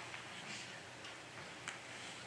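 Quiet room tone during a pause in a man's talk: a faint steady hiss with a small click near the end.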